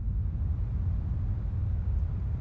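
Steady low rumble of wind, a deep noise with no pitch to it.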